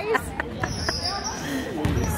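Gym sounds during a basketball game: distant voices carrying in the hall and a few thuds of a basketball bouncing on the hardwood floor. A brief high squeak or whistle comes just over half a second in.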